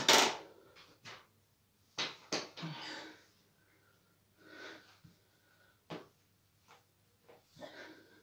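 A rider's short, noisy breaths mixed with a few sharp clicks and knocks from the mountain bike as he swings onto it and steadies it. A loud burst of breath or rustle right at the start is the loudest sound; after that, short bursts and clicks come every second or so with quiet gaps between.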